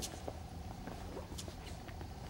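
Quiet room tone in a large hall: a low steady hum with a faint steady tone above it and a few faint clicks.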